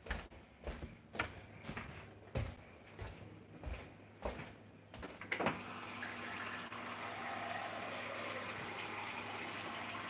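Several short knocks and handling noises, then from about five seconds in water running steadily into a container.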